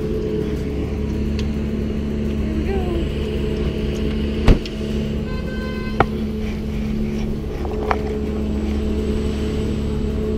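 A steady engine drone runs throughout, with sharp clicks or knocks about four and a half, six and eight seconds in. A brief high tone sounds just after five seconds.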